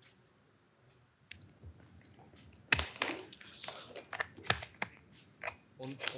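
Computer keyboard typing, irregular keystrokes starting about a second in, heard over a video call from a remote participant whose microphone picks up his typing but not his voice, a sign of a microphone connection problem.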